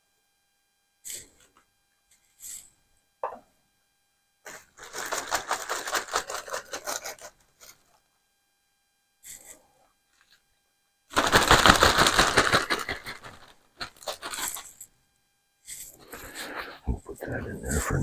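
Plastic zip-top bags crinkling and rustling in several separate bursts as fish fillets are dredged in pancake mix, the loudest and longest rustle a little past the middle.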